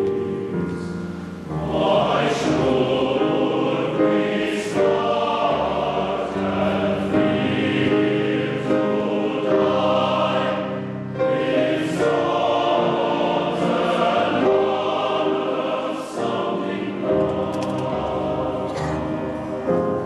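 A large men's glee club singing in full chords, in phrases with short breaks between them.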